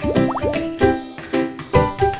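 Upbeat children's show jingle: pitched notes on a steady beat of about two a second, with quick rising pitch-sweep sound effects in the first half second.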